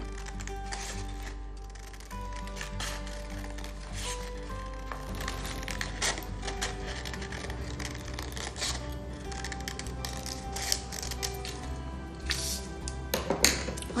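Scissors cutting through colored paper in many short, irregular snips, over background music with held tones.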